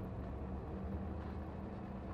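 Diesel train running steadily along the track, its engine hum and the rumble of the wheels on the rails heard from the driver's cab.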